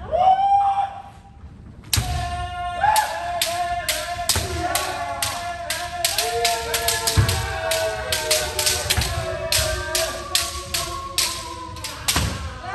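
Kendo kiai shouts and bamboo shinai striking men helmets during kirikaeshi. A single long kiai opens, then after a short lull several practitioners shout continuously over rapid strikes, a few cracks per second, until near the end.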